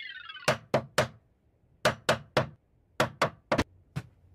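Sharp knocks on wood in three quick runs: three knocks, three more, then four, with a falling whistle-like tone fading out over the first second.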